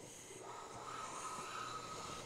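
Hand plane (a WoodRiver #5-1/2 jack plane) taking one long shaving along the edge of a red oak board: a faint, steady hiss of the iron cutting, starting about half a second in.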